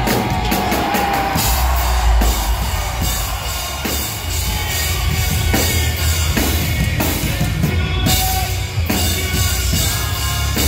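Live rock band playing loud: a drum kit beating a steady rhythm under electric guitars and bass guitar, with a man singing into a microphone over it.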